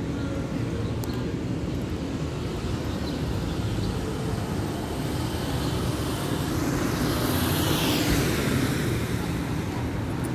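Street traffic noise: a steady low rumble of road traffic, with one vehicle passing that swells and is loudest about eight seconds in.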